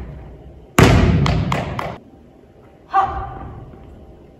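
A volleyball lands on a hardwood gym floor about a second in with a loud thud that echoes in the hall, then bounces several more times, each bounce quicker and fainter. Another short sound follows near the end.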